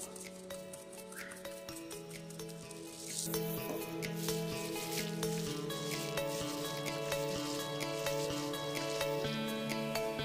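Background music with held notes, over soft wet squishing and plastic crinkling as hands covered in plastic bags knead raw chicken breast pieces in a marinade; the handling grows louder about three seconds in.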